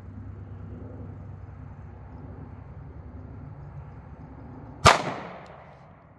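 A single shot from a Smith & Wesson M&P Shield 9mm pistol firing a 115-grain +P solid copper hollow point, about five seconds in. The report is sharp and fades over roughly half a second.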